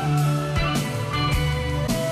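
Live band music in an instrumental passage: electric guitar leading over bass, with drum hits about every half second.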